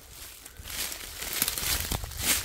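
Footsteps crunching through dry fallen leaves and twigs. They start about half a second in and grow louder, with a couple of sharper crunches near the end.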